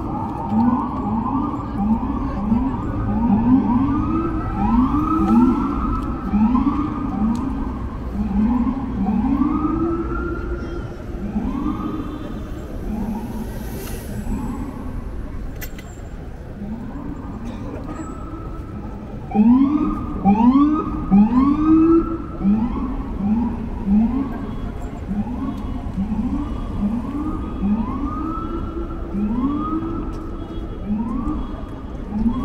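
Several sirens whooping at once, each call rising and falling in pitch within about a second, overlapping and repeating; louder for a couple of seconds about twenty seconds in.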